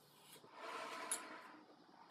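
A soft breath rushing through a rubber GP-5 gas mask and its hose, lasting about a second, with a sharp click in the middle.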